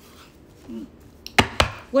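Two sharp knocks on a hard surface in quick succession, as tarot cards are handled at a table.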